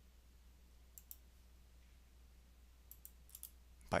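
Faint computer mouse clicks: a pair about a second in, then a quick run of about four clicks near the three-second mark, against a low steady hum.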